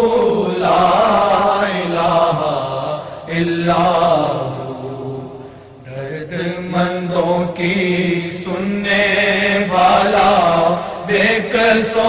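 Devotional Islamic chanting (zikr), with long drawn-out sung phrases of "Allah" over a steady low drone. It dips briefly about halfway through, then resumes.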